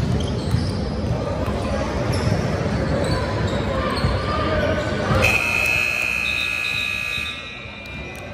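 Gym scoreboard buzzer sounding one long steady tone for about two seconds, starting about five seconds in: the horn at the end of the game. Before it, a basketball is dribbled and voices echo in the hall.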